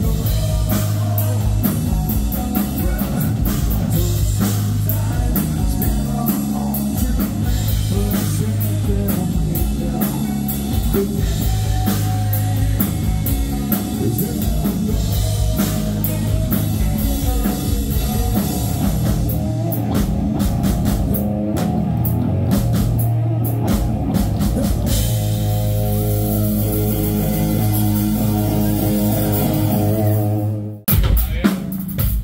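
Live post-grunge rock band playing through a PA: distorted electric guitars, bass and drum kit, with a lead vocal. About 25 seconds in, the band moves into long held, ringing chords.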